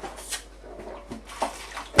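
Sterilising solution poured from a homebrew barrel into a sink, splashing in a few brief gushes.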